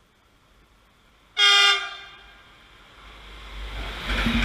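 Locomotive horn giving one short, loud blast of about half a second as the train approaches, followed by the rising rumble of the train nearing and starting to pass.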